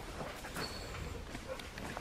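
A Dalmatian searching during nosework, heard faintly: soft, irregular clicks and short noises over a low room hum.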